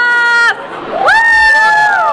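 A woman's high-pitched celebratory whoops: one held call that breaks off about half a second in, then a second that swoops up about a second in and holds.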